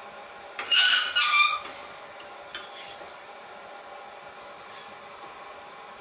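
Two short, loud squeals about a second in from the stainless steel frying pan of spaghetti being scraped and worked, over a steady faint hum.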